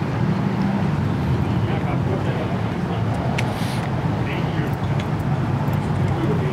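Steady low rumble of car engines running, with indistinct voices of people in the background.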